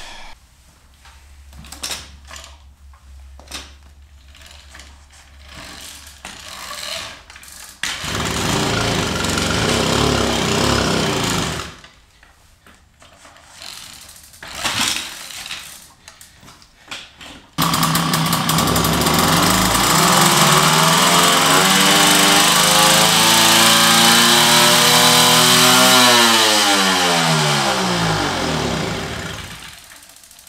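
Vintage Sears moped's two-stroke engine being pedal-started on its stand. It catches and runs for about four seconds, then cuts out abruptly. After more pedalling clatter it fires again and runs fast and steady for about eight seconds, with the throttle cable not adjusted right, before its pitch falls away as it slows and stops.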